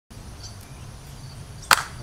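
One sharp hand clap near the end, over a faint low background rumble.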